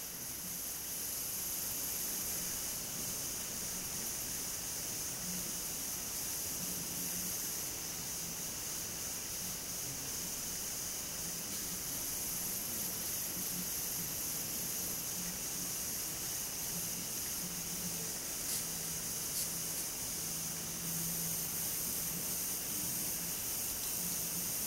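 Steady background hiss of room tone and recording noise, with a faint low hum that comes and goes and two faint ticks a little past the middle.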